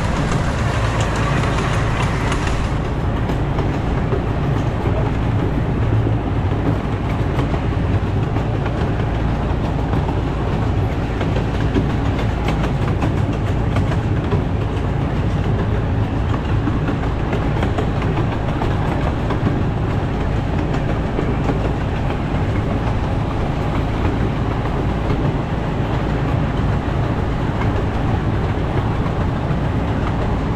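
Miniature steam train running steadily along its track, heard from a riding car: a continuous rumble of wheels on rail with light clicks over the rail joints. A brighter hiss over the top stops about three seconds in.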